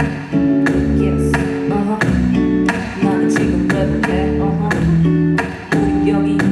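A music loop being built live on a keyboard rig: a repeating chord pattern with a steady beat and a deep, weighty bass line added underneath, played back loud.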